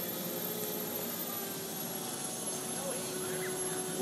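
Chrysler Turbine Car's gas turbine engine running steadily as the car rolls slowly at low throttle, not revved, with a thin high whine over a steady rush.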